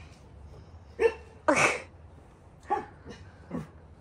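A pet dog making four short sounds. The loudest, a sharp noisy one like a sneeze, comes about a second and a half in.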